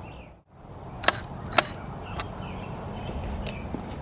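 Steady outdoor background noise with a few sharp clicks, the two loudest about half a second apart; the sound drops out briefly near the start.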